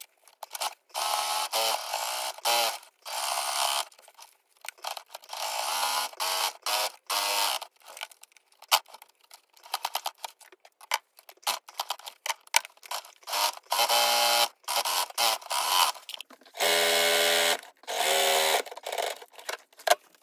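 Electric Brother sewing machine stitching in short start-stop runs, a second or two each, with a steady pitched whir while the needle runs; the longest run comes near the end. It is finishing the edges of a piece of cotton ticking fabric.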